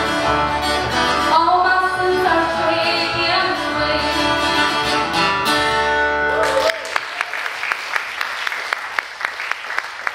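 Upright bass, acoustic guitar and a woman's singing voice play the end of a song. The music stops suddenly about two-thirds of the way through, and the audience applauds.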